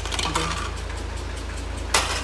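Small road roller's engine idling steadily. A short voice is heard just after the start, and a single sharp knock comes near the end.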